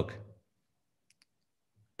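The end of a man's spoken word, then near silence with two faint clicks close together about a second in.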